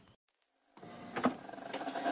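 Dead silence for under a second, then an electric drill with a wire-brush attachment running against a painted, rusty sheet-metal panel, stripping off paint and rust.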